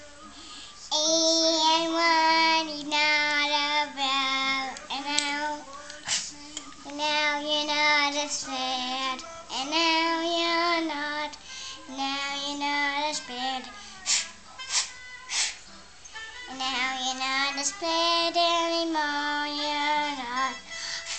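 A young girl singing an improvised song in short phrases of long held notes, with brief breaths between them. Singing stops for a couple of seconds about two-thirds through, when a few sharp clicks are heard, then picks up again.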